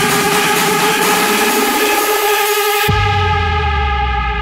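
Electronic dance music from a DJ mix: sustained synth chords over a beat whose bass is gradually filtered away. About three quarters of the way in, the bright top end and percussion drop out and a deep sustained bass note enters, a transition in the mix.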